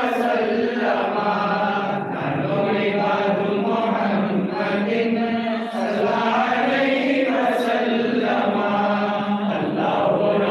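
A group of men's voices chanting together in a slow religious chant, long held notes sung in phrases of a few seconds.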